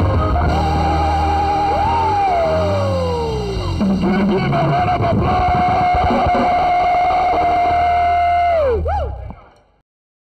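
Live band music led by an electric guitar over a steady bass: a wavering high note, a long downward slide, then one long held note. The held note dives sharply in pitch just before the music cuts off near the end.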